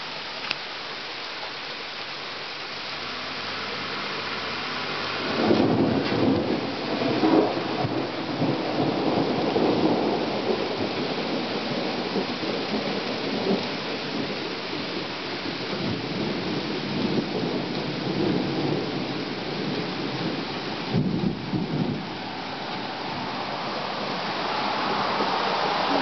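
Steady rain falling. About five seconds in, thunder rolls in with a few sharper cracks at first, then rumbles on for about fifteen seconds before easing back to the rain.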